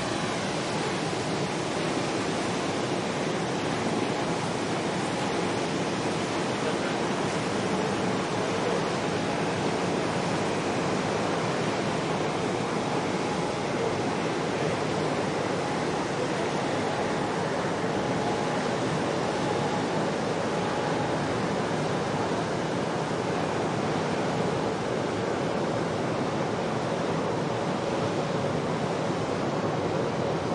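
Steady rush of water and wind: an even noise that runs on without breaks or single events.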